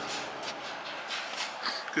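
Tractor engine idling in the background, a faint steady hum.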